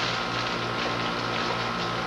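Steady hiss with a low electrical hum and a thin, constant high tone: the background noise of an old videotape recording.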